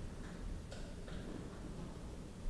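A few faint ticking clicks, three in the first second, over a steady low room hum.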